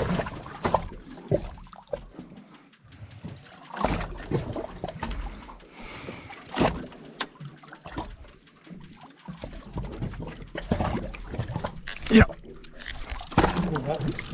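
Water lapping and sloshing against the hull of a drifting boat, with scattered knocks and bumps; the loudest, a sharp knock, comes about twelve seconds in.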